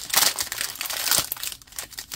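Foil wrapper of a basketball trading card pack being torn open by hand, crinkling and crackling unevenly, loudest in the first second or so.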